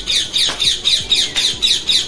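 Pet parrot squawking in a rapid run of short, harsh, falling calls, about five a second.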